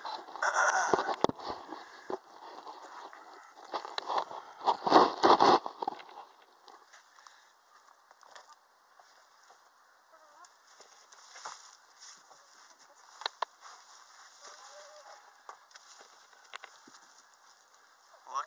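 Rustling and scraping from the camera being handled and set down among dry pine straw and plant vines, loudest in the first few seconds. After that only faint scattered clicks and rustles.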